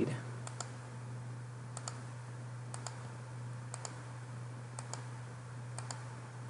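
Computer mouse button clicking in quick press-and-release pairs, about one pair a second and six in all, over a steady low electrical hum.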